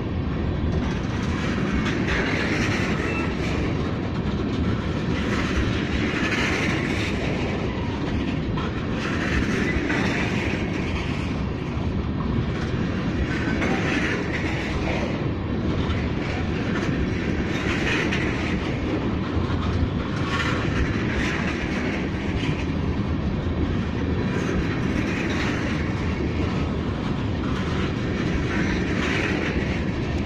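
Empty freight train of oil tank cars rolling past, its wheels clacking steadily over the rail joints. The sound swells about every four seconds as each car's trucks go by.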